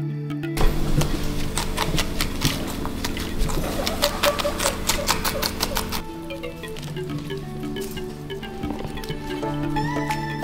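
Background music throughout. From just under a second in until about six seconds, a guinea pig chews a romaine lettuce leaf: rapid crunching clicks over a hiss, which then stops suddenly.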